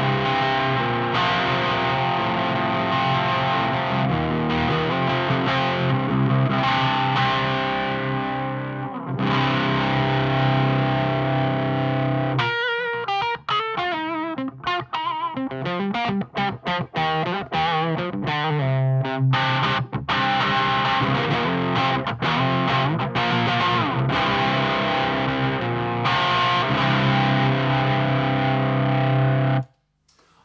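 Electric guitar played through a Victory Silverback valve amplifier's clean channel with its pull-out knob engaged for a crunch tone, on the bridge pickup. Ringing distorted chords give way about halfway through to a choppy run of quick single notes, then chords again until the playing stops near the end.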